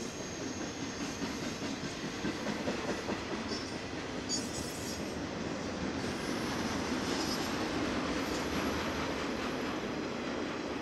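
BNSF intermodal freight train, flatcars carrying truck trailers and containers, rolling steadily past with a continuous rumble and rattle of wheels on rail. Brief high squeals from the wheels come in a few times, in the middle and again later.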